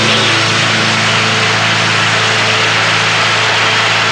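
Live rock band holding one long, loud chord under a dense, steady wash of cymbals.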